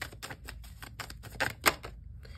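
A deck of cards being shuffled by hand: a quick, uneven run of light clicks and snaps, with two louder snaps near the end.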